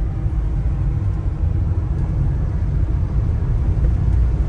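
Steady low rumble of a moving car heard from inside the cabin: engine and tyre noise while driving on a paved road.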